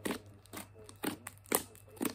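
Slime with clay mixed into it being kneaded and stretched by hand, giving four sharp pops and clicks about half a second apart.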